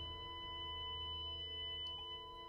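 Hospital patient monitor flatlining: one unbroken high beep, over a low, held music drone.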